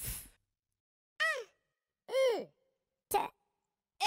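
Brief non-word vocal sounds from cartoon characters: a short breathy sound, then two high 'ooh'-like calls that rise and fall in pitch, about one and two seconds in, and a short breathy burst near the end.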